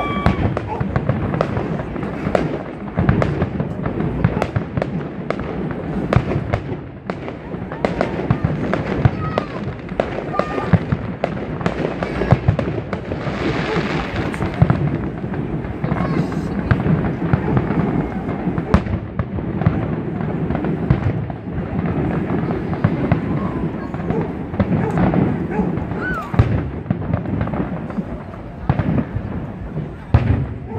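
Aerial fireworks display: a continuous barrage of shell bursts, bangs and crackles that is densest around the middle.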